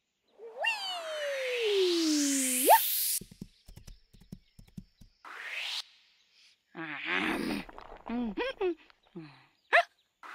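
Cartoon sound effects: a loud falling slide-whistle-like tone under a rising whoosh, then a few soft taps and a short second whoosh. After that comes a character's effortful grunting and straining in short bursts, the sound of pushing hard against a heavy boulder.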